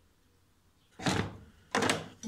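Two hard knocks, the first about a second in and the second near the end: an angle grinder and its flange spanner being handled in a hard plastic carrying case.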